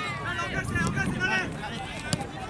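Several short shouted calls from voices on a football pitch, one after another, over a low outdoor rumble.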